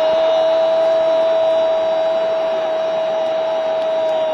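A sports commentator's long, held shout of "goal", sustained on one steady high note over crowd noise from the stadium.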